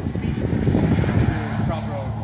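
Wind rumbling and buffeting on a phone's microphone, a steady low roar that covers the scene.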